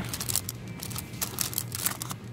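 Clear plastic sticker packets crinkling and rustling in irregular crackles as they are flipped through by hand.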